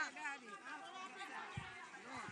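Several people's voices chattering at once, cutting in suddenly at the start; low thumps join about one and a half seconds in.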